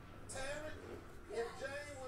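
Faint, indistinct speech: a voice talking quietly in the background, with no other clear sound.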